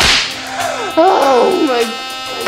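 A sharp whip-like swoosh sound effect at the start that fades out quickly, then a high voice-like sound gliding up and down for about a second, over faint sustained music tones.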